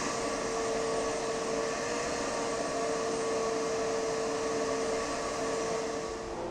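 A machine running with a steady whir and one constant hum.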